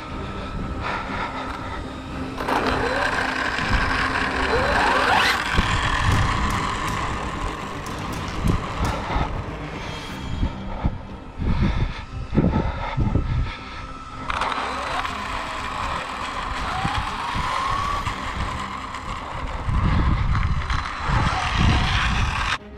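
Onboard sound of an Arrma Limitless RC speed car on dual Arrma BLX 2050kV brushless motors, running on 4S: wind and road rumble, with the motors' whine rising in pitch a few times.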